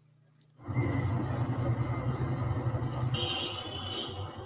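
Opening of a music video played back: after half a second of near silence, a low rumbling ambience starts suddenly and runs on steadily, and a high ringing tone comes in near the end.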